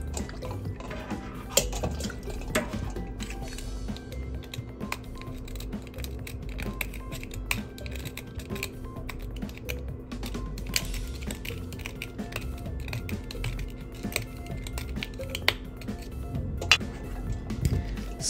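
Small clicks and scrapes of a thin metal pick and tweezers working inside an emptied aluminium Nespresso capsule, prying at its plastic liner, with some water dripping and sloshing, under soft background music.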